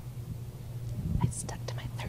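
Quiet, indistinct whispered talk from the stage, away from the microphone, over a steady low hum from the sound system, with a soft thump about a second in, typical of a handheld microphone being handled.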